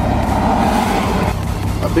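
Mitsubishi Lancer Evolution X's turbocharged engine heard from inside the cabin, with a louder stretch of engine noise in the first second or so that cuts off abruptly, over a steady low drone.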